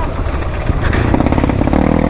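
Dirt bike engine running at low revs while rolling down a rocky track, its note building slightly through the second half.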